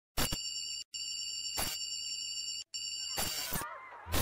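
Small quadcopter drone's motors and propellers whining steadily at one pitch, cut off twice for an instant, with a few sharp knocks.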